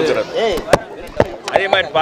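A man speaking in short stretches with pauses, broken by about four sharp clicks, the loudest a little under a second in.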